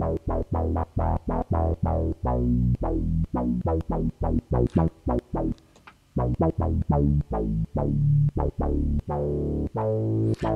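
KORG KingKORG synthesizer playing a simple bass sound as a fast run of short notes, about four a second, with a brief break around the middle. Its filter and envelope settings are being adjusted as it plays, so the brightness and decay of the notes shift from note to note.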